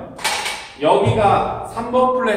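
A man's voice in short speech-like sounds, with a brief sharp noise just after the start.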